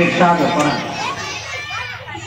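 A man's speech trails off, and from about a second in, quieter overlapping voices of young girls chatter in the seated audience.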